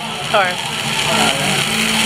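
People talking over a steady hiss of background noise in a busy room.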